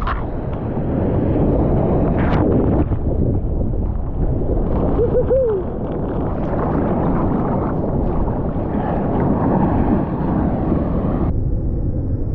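Churning water and breaking surf heard from a camera at the water's surface, a dense low rumble of water and wind buffeting the microphone. A brief wavering tone sounds about five seconds in.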